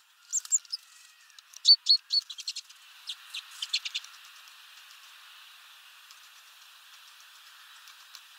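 Small finches calling: quick clusters of short, high chirps through the first four seconds, loudest a little before the two-second mark, then they stop.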